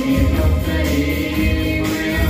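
A group of school students singing a song together through microphones, over a backing track with a steady beat about once a second.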